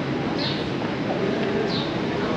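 Outdoor city street ambience: a steady hum of traffic and city noise with faint voices of passers-by. Two short, high chirps come through it, about half a second and just under two seconds in.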